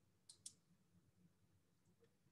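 Near silence with two faint, quick clicks close together about half a second in: a computer mouse clicked to advance a presentation slide.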